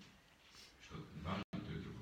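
A man's voice at low level: a few short, faint sounds between sentences, with a brief cut-out in the audio about one and a half seconds in.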